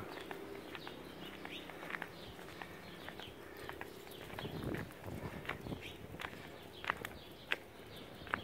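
Footsteps climbing brick steps and crossing paving: a string of light, irregular taps and scuffs, a few sharper ones near the end.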